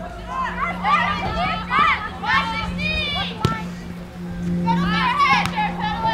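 High-pitched girls' voices shouting and calling out over each other in two spells, with a steady low hum underneath and a single sharp knock a little past the middle.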